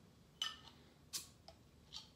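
Metal bottle opener clicking against the crown cap of a glass beer bottle as it is fitted, four light clicks at uneven intervals.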